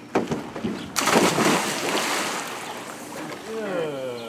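Water splashing in a swimming pool, loudest about a second in and fading into sloshing, as a person gets into the water. A voice is heard near the end.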